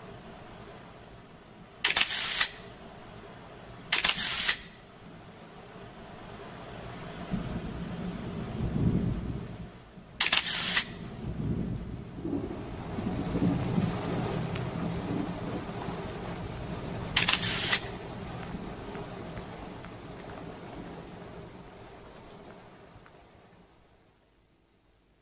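A low rumble that swells from about seven seconds in and fades away near the end, cut by four short, loud bursts of hiss about half a second each, the loudest sounds, at about two, four, ten and seventeen seconds in.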